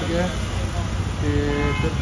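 A vehicle horn sounds once, a short steady note of under a second a little past the middle, over a constant low hum.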